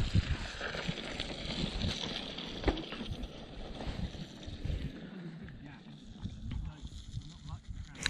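Gusty wind buffeting the camera microphone, an uneven low rumble, with a hiss that is stronger in the first few seconds and a few faint clicks.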